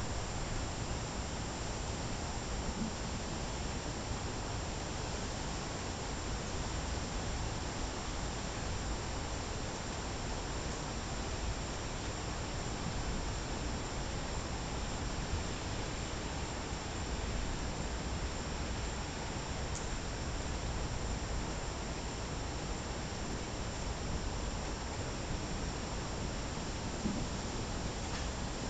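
Steady, even hiss of outdoor night ambience, with no distinct thunderclap.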